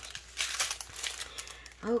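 Clear plastic packaging around a strip of diamond-painting drill packets, crinkling unevenly as it is handled.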